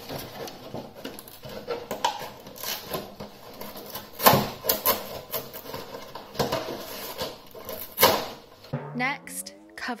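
Thin cardboard cereal box being prised apart at its glued seams: the card crackles, rustles and tears, with louder rips about four and eight seconds in. Near the end a short rising musical sting plays.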